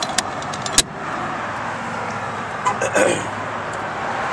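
A few light clicks and then a sharp snap about a second in, from handling the motorcycle's push-button fuel-tank door, over a steady background of vehicle noise.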